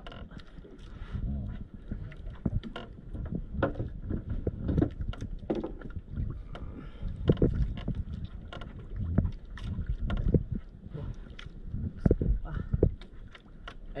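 Low, uneven rumble of water and wind around a small fishing boat at sea, with scattered short knocks and clicks from handling on board.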